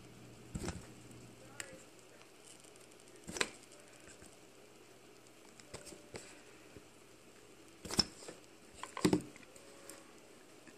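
Small clicks and taps as a Nikki carburetor off a Briggs & Stratton opposed twin is handled and turned in the fingers: a few scattered knocks, the loudest two about 8 and 9 seconds in.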